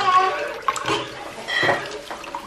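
Watermelon water sloshing and swirling in a pot as a spatula stirs it, with small splashes now and then.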